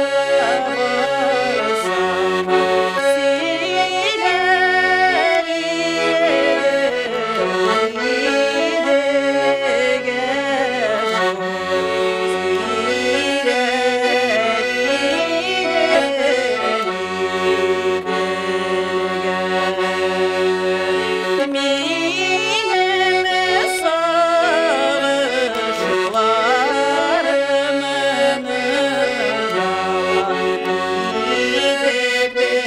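Garmon (button accordion) playing a traditional Tatar folk tune, with a woman singing along.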